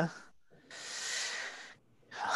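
A single breath, heard close to the microphone, lasting about a second and starting about half a second in.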